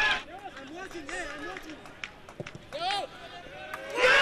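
Players calling out short shouts to one another on a football pitch with no crowd, the loudest call about three seconds in, with a few sharp knocks in between.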